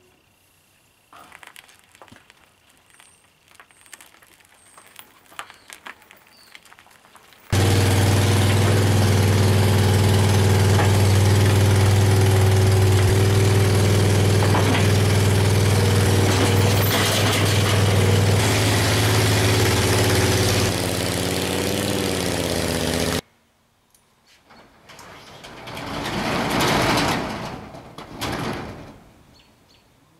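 Engine of a homemade scaled tracked tank running steadily and loudly as the tank is backed off its trailer. It comes in suddenly about 7 seconds in and stops abruptly about two-thirds of the way through. Near the end a sound rises and fades over a few seconds.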